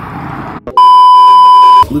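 Edited-in censor bleep: one loud, steady, high electronic beep about a second long that starts and stops abruptly.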